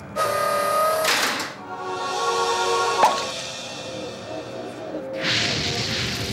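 Soundtrack of a concert intro film: held musical tones with sound effects over them. There is a whoosh about a second in, a single sharp hit about three seconds in, and a rising rush of noise near the end.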